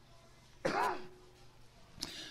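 A man clears his throat once, briefly, a little over half a second in.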